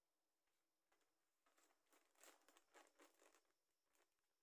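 Faint crinkling of a clear plastic zip-lock bag being handled, a string of soft rustles from about one and a half seconds in to near the end, otherwise near silence.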